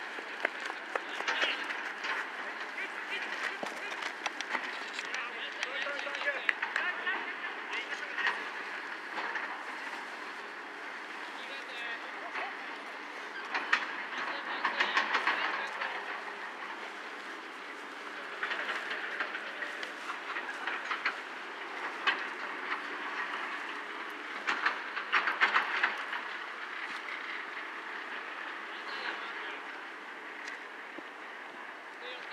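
Players' shouts and calls carrying across an outdoor soccer pitch in repeated bursts, with a steady background hum of open-air noise; the calls are loudest around the middle and again a little before the end.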